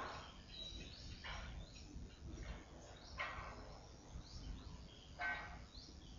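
Faint birds calling: four short calls a second or two apart, with a few brief high chirps, over a low steady background rumble.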